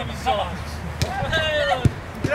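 A football being kicked: two sharp thuds, about a second in and again near the end, the second with a deeper thump, among players' shouts.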